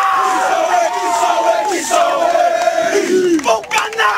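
A team of football players shouting haka war cries together, many voices holding long, drawn-out yells, with a few sharp slaps or impacts near the end.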